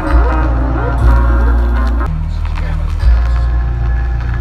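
Live band music at a loud outdoor concert, with deep sustained bass notes changing about once a second and a voice sliding over it in the first couple of seconds.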